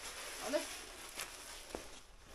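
Cabbage leaves rustling as they are picked up by hand and carried, with a couple of light steps or knocks on a concrete floor in the second half.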